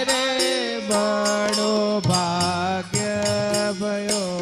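Devotional Holi kirtan: a man singing long held notes over sustained harmonium chords, the melody stepping down in pitch, with tabla and other percussion strokes keeping a regular beat.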